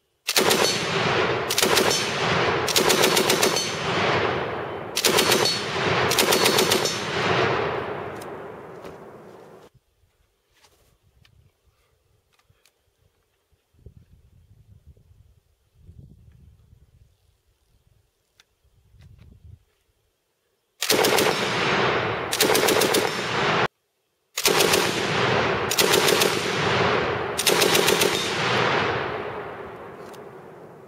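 Breda Model 37 heavy machine gun, converted to 8mm Mauser and fed by 20-round strips, firing strings of automatic fire with the echo dying away after each. The first string is long and is followed by a quiet spell of faint handling noises. Two more strings of fire start about two-thirds of the way in.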